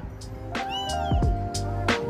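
Background music with a steady beat and held synth-like notes. A short, high, rising-and-falling cry is heard about a second in.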